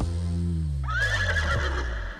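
Film sound effects in place of the song: a low tone sliding steadily down in pitch, and about a second in, a high wavering cry rising in over it.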